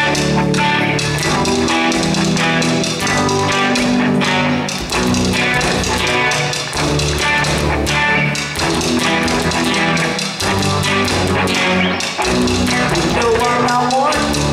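Live rock band playing an instrumental passage without vocals: electric guitars and bass over a drum kit, steady and loud.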